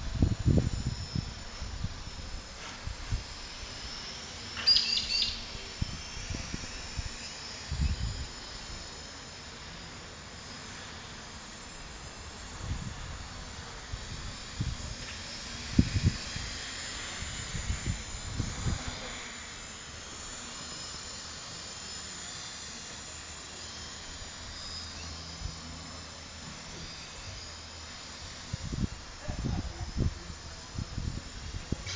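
Quadcopter with 775Kv brushless motors and 9x6 tri-blade propellers flying, a steady high buzzing whine that wavers and glides with throttle. Several louder low rumbling bursts come and go over it, and a brief high chirp sounds about five seconds in.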